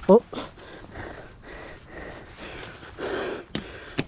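A man's short, startled "oh", then breathy exhalations and a single sharp click near the end. The cry is his reaction to snagging his leg and shorts on a nail sticking out by a gate.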